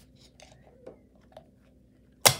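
Faint small clicks and creaks of a plastic tank being worked apart at its spring clips, about three light ticks half a second apart.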